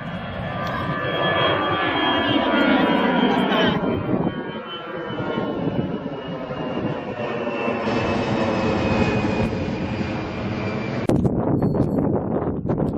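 Twin-engine jet airliners climbing out overhead after takeoff. The engine fan whine slides down in pitch as the aircraft passes, and the sound changes abruptly a few times, around 4 and 11 seconds in, as one jet gives way to another.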